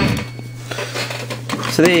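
A vintage 802 rotary telephone's bell ringing is cut off by a sharp click, a sign the rewired phone now rings on the two-wire line. After the click come a low steady hum and a few faint small knocks.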